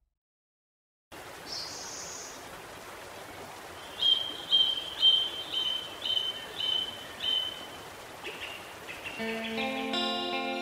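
Running-water ambience that starts after about a second of silence, with a bird calling in a series of about seven short chirps, about two a second. Music comes in near the end.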